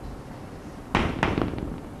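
Chalk tapping and scratching on a blackboard as a word is written: a quick, irregular run of sharp clicks starting about halfway through and lasting under a second.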